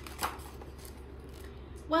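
A page of a hardcover picture book being turned: one brief papery swish about a quarter of a second in, over a faint steady low hum.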